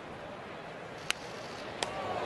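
Steady murmur of a ballpark crowd. About halfway through comes one sharp crack of a bat fouling off a pitch, then a lighter click near the end.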